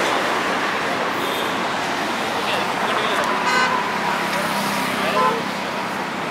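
Steady roadway traffic noise, with a vehicle horn sounding briefly about halfway through.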